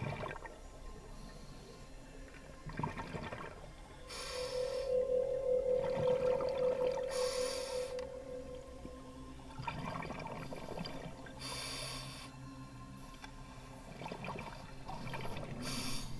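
Underwater sound of a scuba diver breathing through a regulator, heard through the camera housing: a hiss and bubbling comes every three to four seconds. A steady hum runs from about four to nine seconds in.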